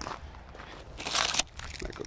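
Clear plastic wrap covering a car's body crinkling in one short burst about a second in.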